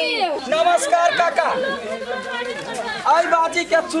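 A group of voices, children among them, shouting and chattering over one another.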